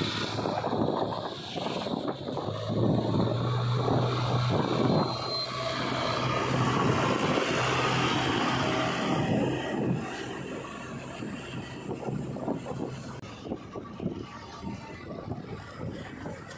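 JCB 3DX backhoe loader's diesel engine running steadily as the machine drives along a paved road, with tyre and wind noise. The engine hum is plain through the middle and grows quieter after about ten seconds.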